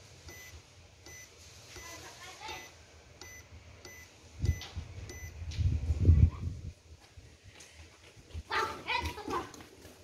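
Kett PM-450 grain moisture tester giving a short high beep at each press of its SELECT button, about twice a second through the first half, as it steps through its grain-type settings. A low rumble comes in the middle, the loudest sound, and a brief louder, voice-like burst comes near the end.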